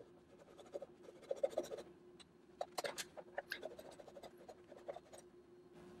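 Irwin fine-toothed pull saw cutting through the thick plastic housing of a refrigerator water filter, heard as faint, quick, irregular scratching strokes, sped up to four times normal speed. A faint steady hum runs beneath.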